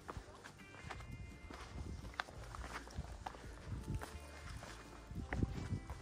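Footsteps of a hiker walking up a rock slab on a trail, a series of irregular steps, the loudest about five and a half seconds in, over quiet background music.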